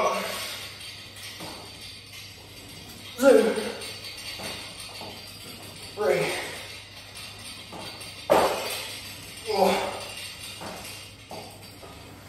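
Home multi-gym cable station worked through tricep pushdown reps: a short vocal effort from the lifter about every three seconds, with metallic jingling and clinking from the cable chain and weight stack.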